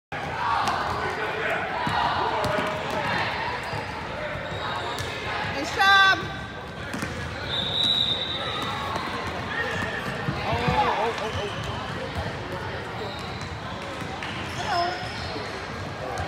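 Youth basketball game in a gym: a basketball bouncing on the court and players' shoes on the floor, under spectators' voices and shouts that echo in the hall. There is one loud shout about six seconds in, and a brief high squeak just after.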